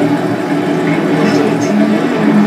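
Live noise music: a dense, steady wall of electronic noise from a tabletop rig of effects pedals, with low droning tones running underneath.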